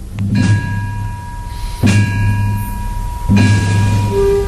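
A slow processional march played by a band: three heavy drum-and-bell strikes about a second and a half apart over a long held high note.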